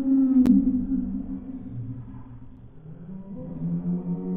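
A woman's long, low, closed-mouth moans, held on one pitch and then dropping lower, in a grimacing reaction to the taste of a momo. There is a single sharp click about half a second in.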